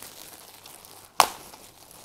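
Plastic carrot bag being pulled open by hand: faint crinkling of the plastic, with one sharp snap of the bag tearing just past halfway.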